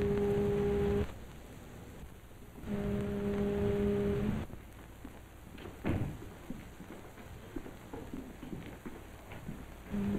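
A ship's foghorn blows a steady low note in repeated blasts of about a second and a half each, a fog signal. One blast ends about a second in, another sounds around three seconds in, and a third begins at the very end. Between the blasts there are faint scattered knocks, one sharper about six seconds in.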